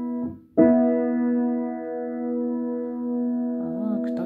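Piano playing a perfect fourth, two notes sounded together: a held interval dies away, the same two notes are struck again about half a second in and ring on.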